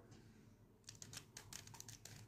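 Faint, quick plastic clicks of a 3×3 Rubik's cube's layers being turned by hand, starting about a second in.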